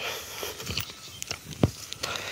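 Footsteps crunching over dry cut grass and weed stubble: soft irregular crackles with a sharper click a little past halfway.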